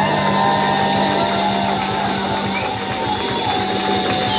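Live rock band playing: electric guitars, bass and drums, with a long held note that wavers in pitch over a steady beat.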